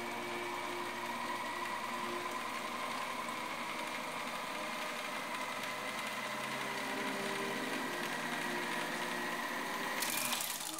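Motorised Micro Vue microfilm reader winding film fast onto its reel: a steady motor whir with a high whine that climbs slightly towards the end.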